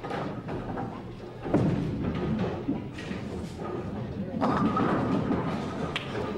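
Bowling-alley sounds: a bowling ball's thud onto the wooden lane about a second and a half in, then rolling and the knock of wooden pins, under a murmur of voices.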